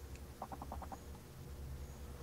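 A faint quick run of about six short high chirps, over a low steady hum.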